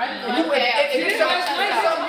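Speech only: several people talking over one another in a room, a man's voice among them.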